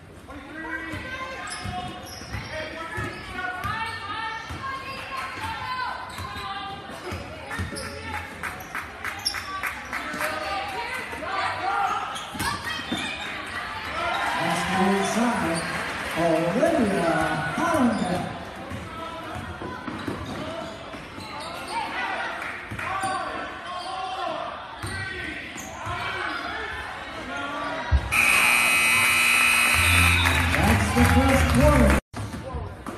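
A basketball bouncing on a hardwood gym floor during play, with spectators talking and calling out in a large echoing gym. Near the end a steady scoreboard horn starts and holds.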